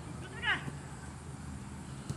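A short, high-pitched call about half a second in, falling steeply in pitch, over a low background murmur of voices.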